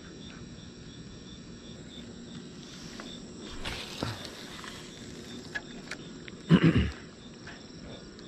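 Crickets chirping steadily at night in a regular, even pulse over a low background hiss. A brief, loud, unidentified sound breaks in about two-thirds of the way through.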